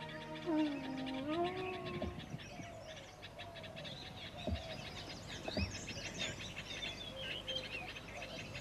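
Birds chirping at dusk, many short high calls, busiest past the middle. In the first two seconds a last wind-instrument note of the soundtrack music dips and rises in pitch, and three low thumps come about two, four and a half and five and a half seconds in.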